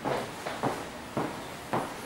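Table tennis ball being hit with a bat and bouncing on the table in a forehand drive drill: four sharp clicks at an even pace, about half a second apart.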